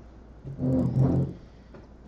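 A man's drawn-out hesitation sound, a hummed 'mmm' or 'uhh' held on one pitch for just under a second, starting about half a second in, over a steady low hum.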